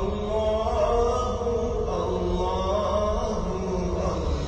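Background music: a voice chanting a slow, wavering melodic line over a steady low hum.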